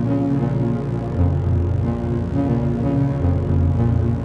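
Original 1978 Serge Paperface modular synthesizer playing low pitched notes from the capacitive touch keys of its Touch Keyboard Sequencer, with reverb added. The notes change pitch about once a second.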